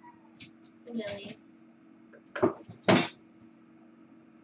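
A kitten's short meow about a second in, then two loud, sharp noises about half a second apart, over a low steady hum.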